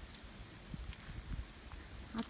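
Quiet outdoor ambience with a low, uneven rumble on the microphone and a few faint ticks.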